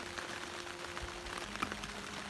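Heavy rain pattering on a plastic tarp overhead, with a faint steady hum that drops to a lower pitch about halfway through.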